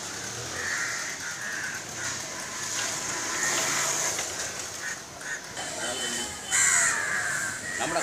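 Outdoor ambience of distant voices and bird calls, loudest about six and a half seconds in.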